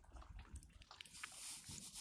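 Faint sounds from call ducks close by: a few soft clicks, then about a second of high, hissy rustling.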